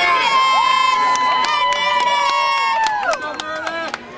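Track-meet spectators cheering on distance runners: one high-pitched voice holds a long yell for about three seconds before dropping off, over other shouting voices and scattered sharp claps.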